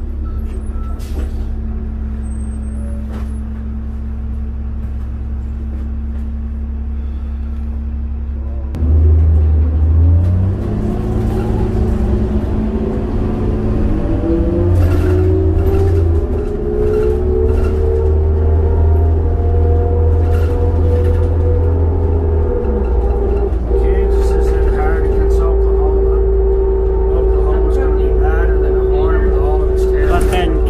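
Inside a 2002 New Flyer D40LF diesel transit bus. The drivetrain runs steadily and fairly quietly for about nine seconds, then gets louder as the bus accelerates. Its pitch climbs and drops back several times through the gear changes, then settles into a steady note at cruising speed.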